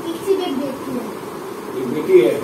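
A person's voice, soft and buzzy, with a wavering pitch: murmuring or humming rather than clear words.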